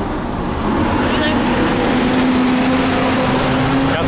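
Heavy truck driving past close by on a busy road, its engine a steady low drone over general traffic noise, growing louder as it draws level.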